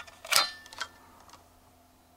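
Trailer breakaway switch's lanyard pin pushed back into the switch: one sharp metallic click with a brief ring, then a fainter click. Reinserting the pin cuts the current to the electric brakes.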